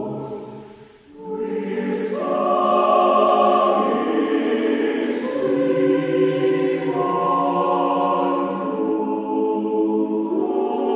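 Choir singing in long held chords. One phrase dies away about a second in, then the next enters and swells, with sung 's' sounds at about two and five seconds.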